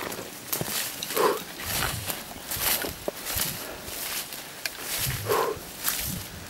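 Footsteps and the brushing of leaves and stems as someone pushes through dense undergrowth, with a rustle every half second or so. A heavy out-breath comes about a second in and another near the end, from a man overheated by the walk.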